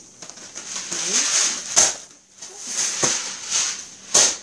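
Groceries being handled: rustling and crinkling of plastic bags and packaging, with two sharp knocks about two and three seconds in.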